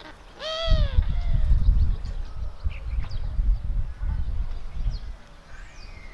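A gull gives two loud, arched cries in quick succession at the start. Then wind buffets the microphone in low, gusty rumbles, with a few faint high bird chirps.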